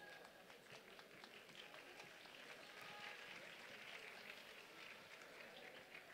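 Very faint sound from a seated audience, scattered clapping and low murmur, close to silence.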